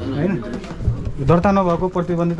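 People talking in a small shop, voices running through most of the two seconds.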